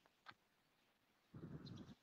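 Near silence from the call audio cutting out, with a faint rush of noise in the last half second.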